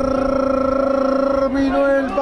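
A man's voice holding one long, steady drawn-out note, broken off about one and a half seconds in by a shorter note.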